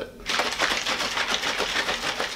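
Plastic shaker bottle of pre-workout drink being shaken hard, giving a rapid, continuous rattle.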